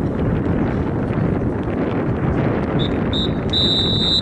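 Wind buffeting the microphone, with a referee's whistle near the end: two short blasts about three seconds in, then one longer blast, signalling the end of the half.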